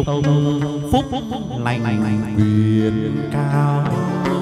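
Chầu văn ritual music: a male voice holds long, low, chant-like notes over plucked moon lute (đàn nguyệt), with a couple of sharp percussion strikes.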